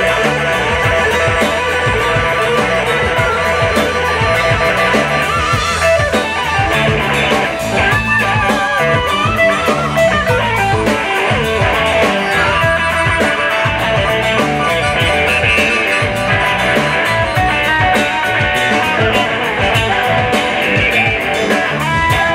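Live blues band playing an instrumental passage: harmonica and electric guitar over bass and drums, with bending, wavering notes and steady cymbal ticks.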